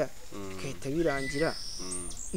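A high, thin, steady insect call starts about half a second in, over a man's soft speech.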